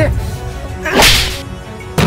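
A sharp, whip-like whoosh about a second in, over a low rumble, as a detached car door is swung down to the ground.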